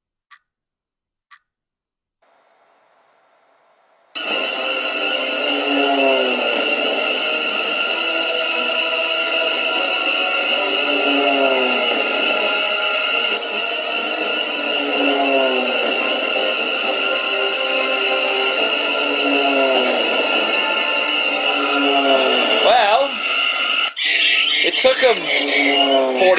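Film soundtrack of the bird attack, starting after about four seconds of near silence: a loud, steady electronic-sounding drone with a falling cry sound effect repeated every second or two. The sound changes shortly before the end.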